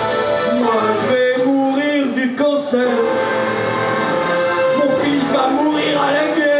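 Live electronic music played on a synthesizer keyboard, with a man's voice over it.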